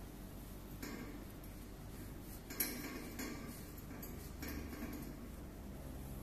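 Faint handling sounds of a nylon rope being worked into a clove hitch around a stainless steel rail, with a few soft rustles and a sharp click about two and a half seconds in.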